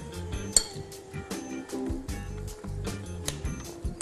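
Background music with light clinks of a metal spoon against an aluminium baking tray as filling is spooned into a tomato, one sharper clink about half a second in.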